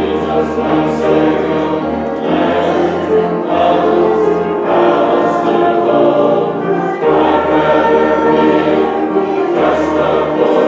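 A church congregation singing a hymn together, with instrumental accompaniment holding long, steady bass notes.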